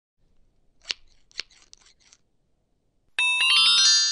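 Sound effects of a logo intro: a few short, faint clicks and swishes in the first two seconds, then a bright chiming chord that strikes about three seconds in and rings on, fading slowly.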